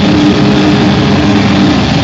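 Live metal band playing loudly: heavily distorted guitars and bass hold low notes through a dense, clipped wall of sound.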